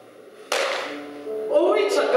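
A sudden sharp crack about half a second in, fading quickly, then a man's raised voice sliding upward in pitch near the end.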